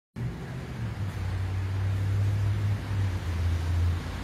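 A motor vehicle engine running close by, a low steady hum that shifts pitch a couple of times, over outdoor street noise.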